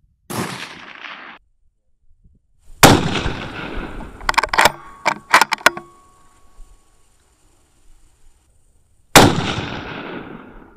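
.308 Winchester bolt-action rifle fired twice, about six seconds apart, each shot a sharp report with a long echoing tail. Between the shots come several quick metallic clicks of the bolt being cycled. Just after the start there is a shorter, quieter report that cuts off abruptly.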